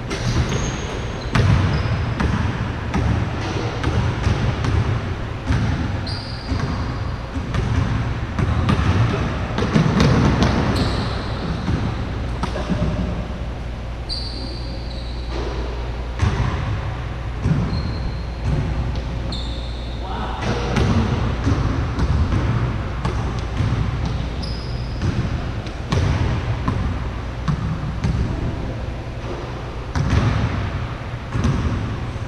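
A basketball bouncing and being dribbled on a hardwood gym floor, with repeated sharp bounces, and sneakers giving short high squeaks on the court now and then, all echoing in a large gym.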